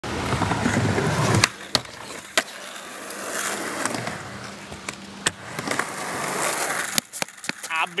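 Skateboard trucks grinding loudly along the metal-edged ledge of a wooden skate box in a 5-0 grind, cut off abruptly about a second and a half in by a sharp clack. After that the board clatters with a few scattered sharp knocks over a quieter rolling noise.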